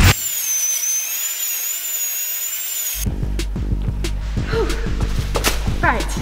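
A high-pitched, wavering whine for about three seconds, which cuts off suddenly. Background music with a steady bass line then comes in.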